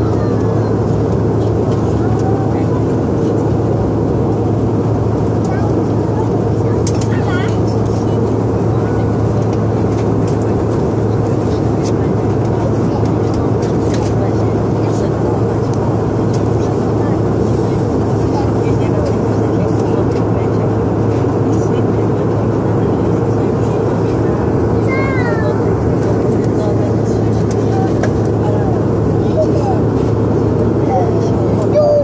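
Airliner cabin noise in flight: a steady drone of engines and air, strongest in a low hum.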